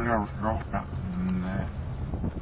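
A man's speech played backwards: garbled syllables and one long drawn-out vowel about a second in, over a steady low rumble.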